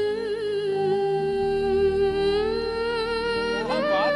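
A young girl singing a slow Hindi film song into a microphone, holding long notes with small ornamental turns and a step up in pitch about halfway through, over a soft instrumental accompaniment.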